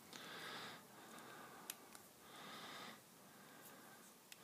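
Near silence: two faint breaths through the nose about two seconds apart, with a single small click between them.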